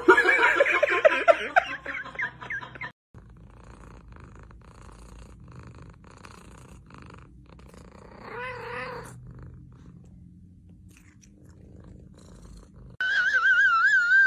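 Cat sounds in three parts: a kitten making wavering vocal sounds while it eats from a spoon, cut off about three seconds in; then a quiet, steady cat purr with one short wavering call about eight and a half seconds in; then, near the end, a loud, high, wavering cat call.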